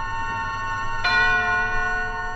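A bell-like musical sting: struck tones ringing on, then a second, fuller stroke about a second in that slowly dies away.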